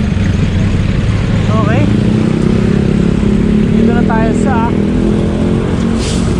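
Busy street traffic: a nearby motor vehicle's engine running with a steady low drone over a low rumble. Short calls from voices come about one and a half seconds in and again around four seconds in.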